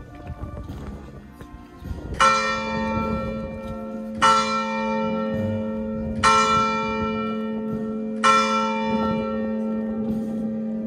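A church bell tolling: four strikes about two seconds apart, starting about two seconds in, each ringing on with a lingering hum into the next.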